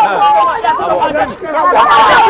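People talking loudly over one another in an argument, with several voices overlapping.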